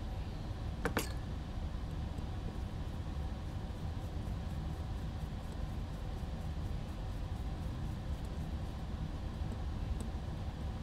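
A screw being driven into a small drone frame's top plate by hand: one sharp click about a second in, then faint, evenly spaced ticking through the middle, over a steady low hum.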